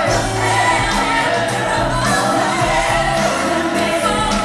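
Several singers performing a pop song live with a band, voices over a steady bass line, recorded from the audience.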